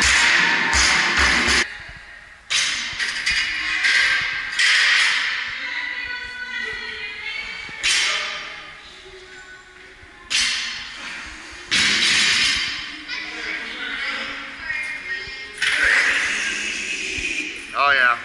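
A loaded barbell with rubber bumper plates, dropped from overhead, hits the gym floor and bounces a few times in the first second and a half. Background music with vocals plays throughout.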